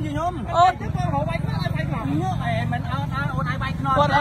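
People talking, in speech the recogniser could not transcribe, over a steady low rumble.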